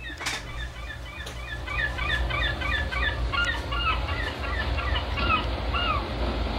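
Many birds calling in short, quick, overlapping chirps over a steady low rumble, with a sharp click just after the start.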